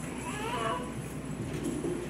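A short, high, wavering vocal cry about half a second in, over the steady murmur of the hall.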